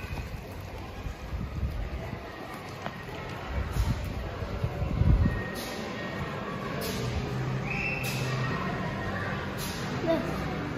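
Low rumbling and rustling of a heavy plastic door curtain brushing past, loudest about five seconds in. Then a steady low hum in a large indoor barn, broken by a few short sharp clatters.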